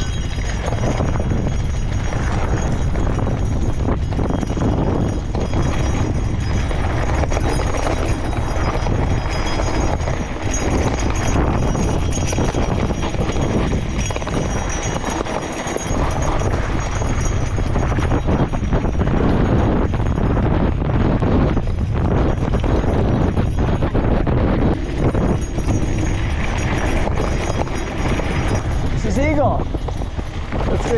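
Wind buffeting the microphone while a gravel bike on wide 650b tyres rolls over loose dirt and gravel, the tyres crunching and the bike clattering over bumps.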